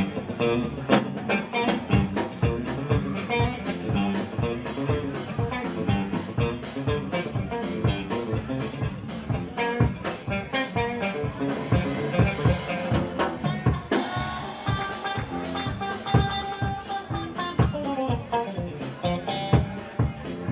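Live band playing an instrumental passage: electric guitars over a steady drum-kit beat.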